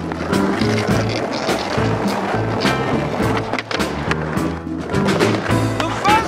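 Skateboard wheels rolling on pavement with sharp clacks of the board popping and landing, over a music track with a bass line.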